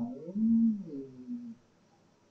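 A person's voice humming a drawn-out hesitation sound for about a second and a half, pitch rising then falling, then near silence.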